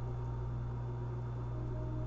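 A steady low hum with a faint hiss under it: background room tone in a pause between words.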